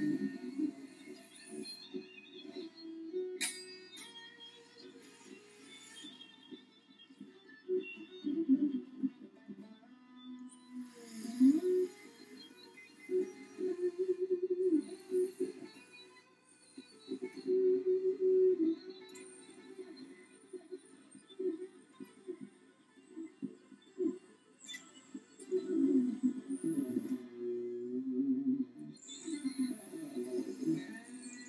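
Solid-body electric guitar picked in short melodic phrases of single notes, with brief pauses between phrases.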